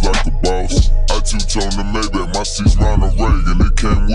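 Slowed-down hip hop track: rapped vocals over a beat with deep, heavy bass.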